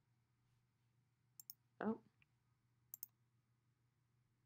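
Two quick double clicks of a computer's pointer button, about a second and a half apart, over near silence.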